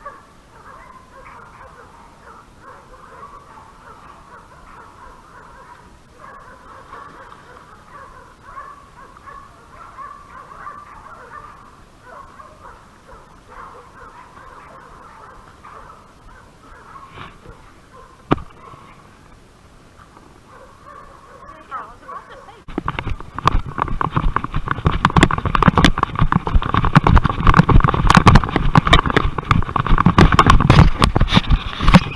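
Hog dogs barking and baying steadily in the distance. About three-quarters of the way through, it gives way to loud, continuous rustling and knocking as a person runs through brush, branches and footsteps close against the microphone.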